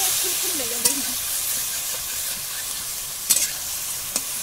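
Chicken pieces sizzling and spitting in hot oil in a metal kadai as a metal spatula stirs them, with a steady hiss throughout. Two sharp clicks of the spatula on the pan come about a second in and near the end.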